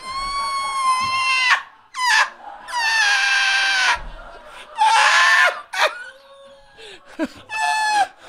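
Two men laughing uncontrollably: several long, high-pitched, shrieking laughs with short breaks between.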